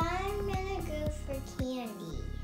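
Background music with a steady beat of about two strokes a second, under a child's singing voice holding long, gliding notes.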